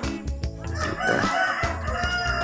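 Background music with a steady low beat. About half a second in, a long, drawn-out high call starts over it and lasts past the end.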